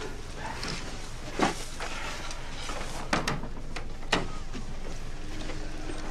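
Four sharp knocks from a film soundtrack: one about a second and a half in, two close together about three seconds in, and one a second later, over a low steady background.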